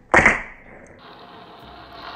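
Fingerboard landing a flip trick on a wooden desk: a sharp clack of deck and wheels hitting the wood just after the start, then a steady hiss.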